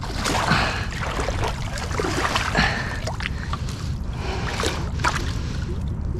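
Water splashing and dripping as a waterlogged bicycle tangled in a cast net is pulled out onto a concrete canal bank, with short knocks and scrapes over a steady low rumble.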